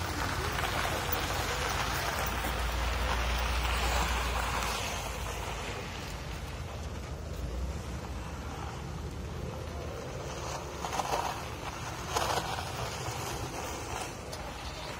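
A 1980s Buick sedan's engine running with a low rumble as the car rolls slowly over gravel, with tyre noise. The sound is loudest in the first few seconds and then eases. Two short knocks come near the end.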